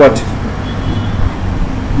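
Steady low background rumble filling a pause in speech, with the end of a spoken word right at the start.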